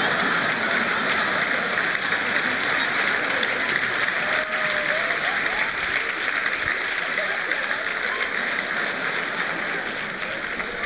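Live audience applauding: a long, steady burst of clapping that eases off slightly toward the end.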